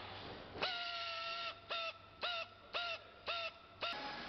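Hand-held rotary grinding tool on a tyre casing, whining in bursts as it is triggered. Each burst rises sharply in pitch at its start, then holds. One run lasts about a second, followed by five short bursts about twice a second.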